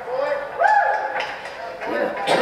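Speech: a person's voice talking, with no other distinct sound.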